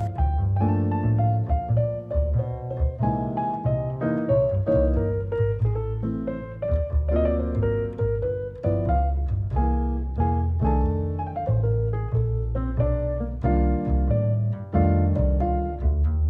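Background music: piano over a plucked bass line, notes changing at an easy, even pace.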